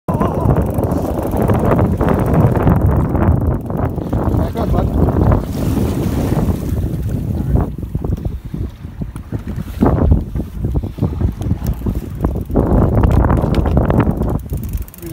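Wind buffeting the microphone aboard a trolling boat: a loud, dense low rumble that swells and dips in gusts, easing briefly a little past the middle, over the wash of choppy water.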